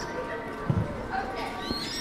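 Eurasian coots on a canal calling: short high chirps that glide up and down, with a low thump about two-thirds of a second in.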